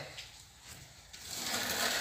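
A cardboard box scraping across a concrete floor as a dog bites it and drags it. The rough scraping starts about a second in and keeps going.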